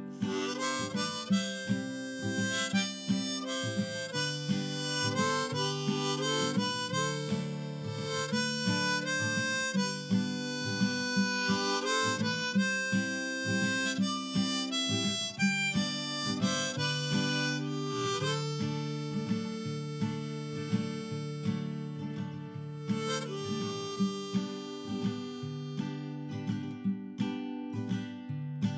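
Harmonica solo in a neck rack, played over strummed acoustic guitar in a country-folk instrumental break with no singing.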